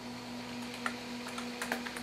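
A steady low electrical hum, with a few light, sparse clicks from the laptop in the second half.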